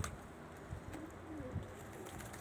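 Faint cooing of domestic pigeons, a couple of short soft coos about a second in.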